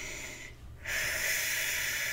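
A woman taking a long, deep breath, starting just under a second in and still going at the end.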